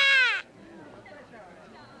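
A cartoon child's high-pitched shouted line, its last vowel drawn out and falling in pitch before it stops about half a second in, followed by faint voices.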